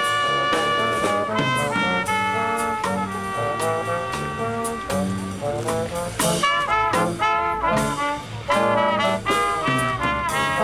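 Brass music: brass instruments playing a tune of many short, quickly changing notes.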